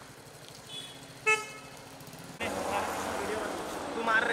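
A vehicle horn gives one short toot over faint street ambience about a second in. About two and a half seconds in, louder street noise with voices comes in.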